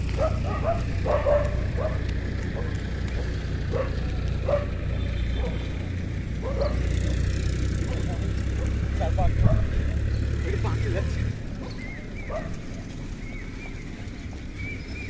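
Wind buffeting the microphone, a low rumble that drops away about eleven seconds in, with scattered short distant calls over it.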